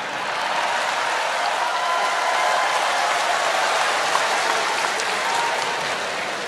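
Large audience applauding, swelling in the first half second and then holding steady.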